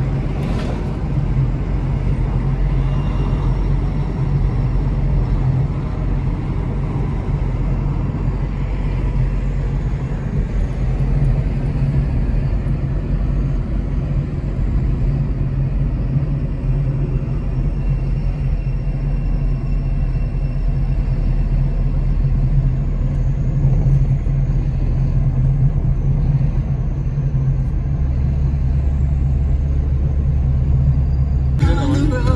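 Suzuki car driving at speed, heard from inside the cabin: a steady low rumble of engine and tyre road noise.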